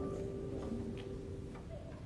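A lull between hymns: a held keyboard note dies away, with four faint, scattered taps over about a second.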